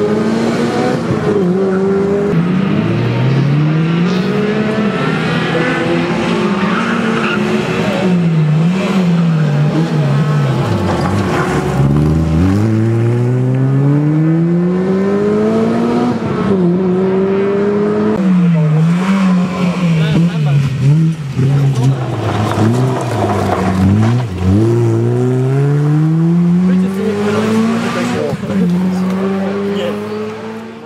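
Honda Civic Type R rally car's four-cylinder engine driven hard through the gears. The pitch climbs steeply in each gear and falls at every upshift, over and over, with a deep drop in revs about eleven seconds in.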